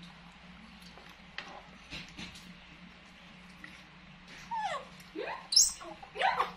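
Baby macaque giving short, high squeaky calls that slide down and up in pitch, starting about four and a half seconds in and ending in a shrill squeal. Before that there are only a few faint clicks.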